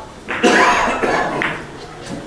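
A short, loud burst of a person's voice lasting about a second, starting a little way in.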